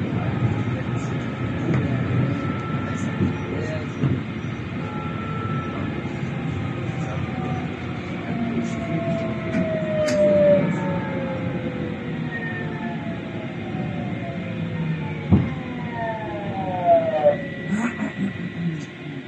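Tram running on its rails with a steady rumble, its electric drive whining in tones that fall steadily as it brakes, until it draws into a stop near the end. There is a single sharp knock about fifteen seconds in.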